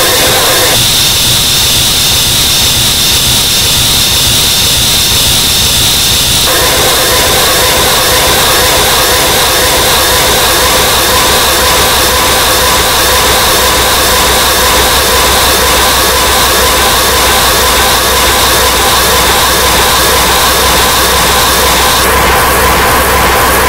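Loud, steady wall of harsh, distorted noise with a high whine through it, part of a noise-style album track. The middle of the noise drops out about a second in and comes back about six seconds in.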